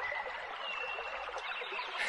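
Steady rush of flowing stream water, laid as a nature-sound bed under the narration, with a faint thin whistle about half a second in.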